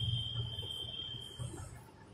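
Faint chalk writing on a blackboard, under a thin steady high-pitched whine that stops about one and a half seconds in.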